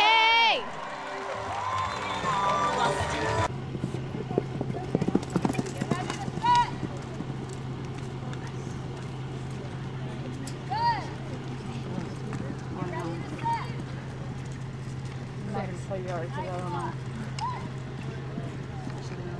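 A horse's hoofbeats on the arena dirt during a barrel run, with a few short shouts and whoops from people at the rail. A steady low hum runs underneath from a few seconds in.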